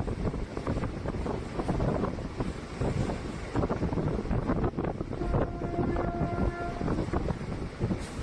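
Passenger train running, heard from inside a coach: a steady rumble of wheels on rail with wind buffeting the microphone. About five seconds in, a horn sounds for about a second and a half.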